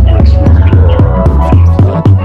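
Experimental electronic music with a deep, sustained bass and a steady beat of about four hits a second.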